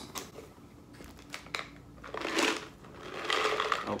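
Plastic snack wrapper crinkling and rustling as it is handled and pulled open, with a few sharp crackles at first and two louder bursts of rustling, one in the middle and one near the end.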